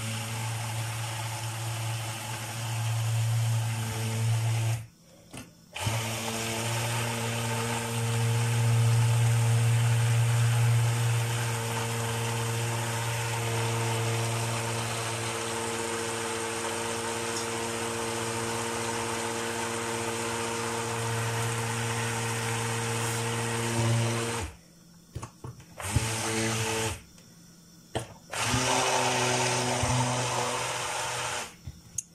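Hand-held stick blender running with a steady motor hum, its blade chopping diced ginger in oil down in a tall plastic pot. It stops briefly about five seconds in, and near the end it is switched off and pulsed on again in a few short spurts.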